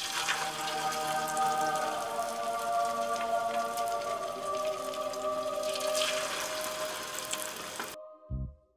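Battered pork pieces sizzling and crackling in hot oil in a shallow frying pan: a steady, dense crackle of bubbling oil as the batter fries. Soft music plays underneath.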